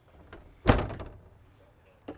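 Wooden interior door of a 1954 Owosso travel trailer being pushed shut: a light click, then one loud knock as it closes.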